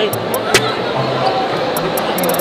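A few sharp knocks, the clearest about half a second in, over indistinct voices and background music.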